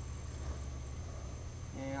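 A pause in talk: faint outdoor background with a steady low rumble, and a man's voice starting again near the end.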